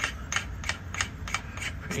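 Fuel cell fill cap being twisted by hand, giving a steady run of sharp clicks at about three a second.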